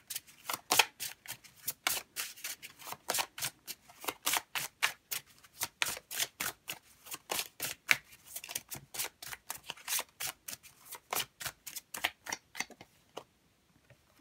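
An oracle card deck shuffled hand to hand: a quick run of crisp card slaps and flicks, several a second, that stops near the end.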